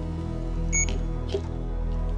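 Soft background music with one short, high electronic beep from the RemunityPRO infusion pump system about three-quarters of a second in, signalling a step of the pump's self-test after a new cassette is attached.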